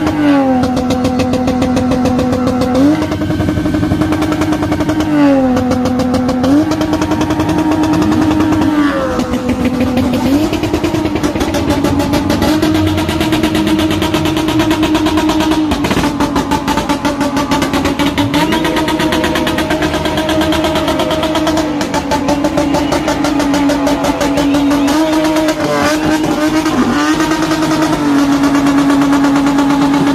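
Turbocharged Toyota JZ straight-six engine held at high revs on launch control. The note holds at one high pitch, dips to a lower pitch and comes back up again and again, with a rapid crackle through much of it.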